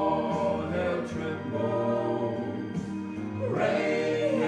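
Male gospel quartet singing together in harmony into microphones, holding long notes.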